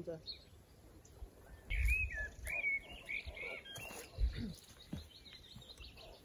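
A bird singing short whistled phrases, loudest about two seconds in, with fainter chirps later, over outdoor ambience broken by a few low thumps.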